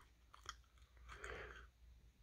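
Near silence, with a few faint clicks and a brief soft rustle about a second in.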